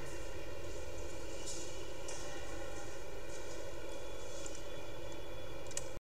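Steady background hiss with a faint constant hum and a few faint soft ticks, without speech.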